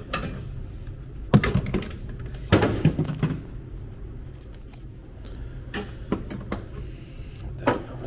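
Handling noise: scattered knocks and clunks as plastic containers and gear are moved about, with a cluster a few seconds in, over a steady low hum.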